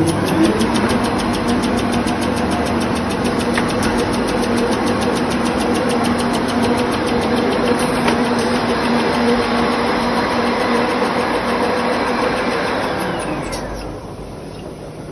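Toilet-roll production line machinery running: a steady mechanical hum with a fast, even ticking of about six clicks a second.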